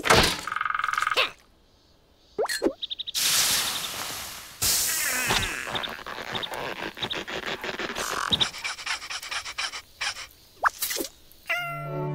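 Cartoon sound effects: a quick run of knocks and thuds with short squeaky noises and wordless cries from the animated larvae. Music comes in near the end.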